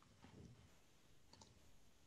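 Near silence: room tone, with a couple of faint clicks about two-thirds of the way through.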